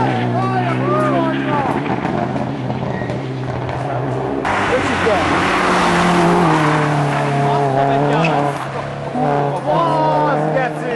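Rally cars at full throttle on a forest stage, engines revving up and dropping back through gear changes, with squealing tyres. About four and a half seconds in, the sound cuts abruptly to a closer car passing with a loud rush of engine and tyre noise. Another car is heard accelerating toward the end.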